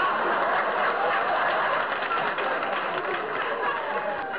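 Studio audience laughing, dying down near the end.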